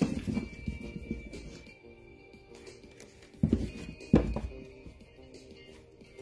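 Soft background music of steady held tones, with dull low thumps at the start and twice more about three and a half and four seconds in.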